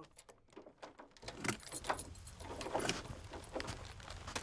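Keys jangling with scattered small clicks and rustles, as a door is unlocked and opened, over a low steady hum that starts about a second in.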